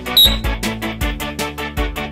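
Background music with a steady beat: keyboard and synthesizer notes over a deep thud about every three-quarters of a second and fast ticking percussion, with a brief high tone just after the start.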